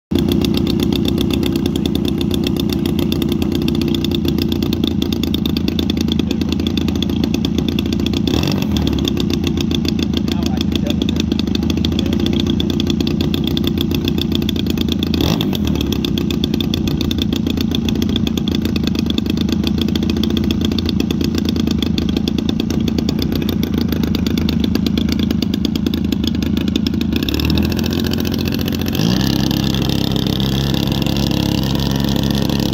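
GP-76 two-stroke gas engine of a large radio-controlled RV-8 model plane running steadily at low throttle on the ground, then opened up with a rising pitch near the end.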